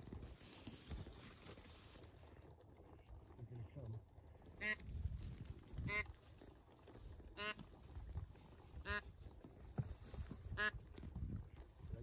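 Five separate drawn-out mallard-style quacks, about one and a half seconds apart, over a faint low wind rumble.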